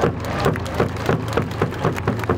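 Crowd clapping in a quick, steady rhythm, about three to four claps a second.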